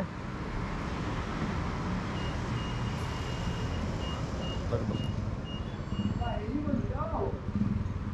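High-pitched electronic beeping. About two seconds in, a short beep is followed by a long beep of about a second, then a run of short beeps about two a second, over steady traffic noise and faint voices.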